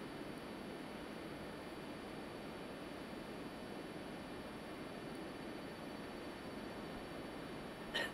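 Faint, steady hiss with no distinct events.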